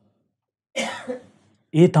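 A man's short throat-clearing cough about a second in, after a brief silence, followed by the start of speech near the end.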